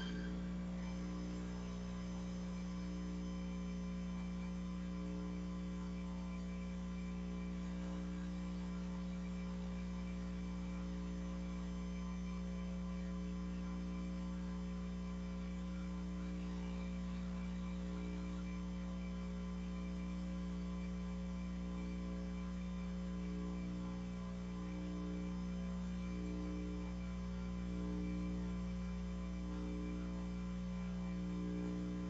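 Steady electrical mains hum, a constant buzz made of several stacked tones, with nothing else heard over it.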